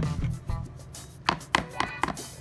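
A metal spoon scooping and pressing thick liquid slime in a plastic tub: a string of sharp clicks and squelches, several close together in the second half. Quiet background music plays underneath.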